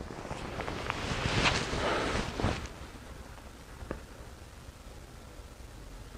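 Fabric rustling and shifting as a person lies back onto a pressure-mapping mat spread over a foam mattress. The rustling lasts about two and a half seconds, then it settles to near quiet with one faint click near four seconds.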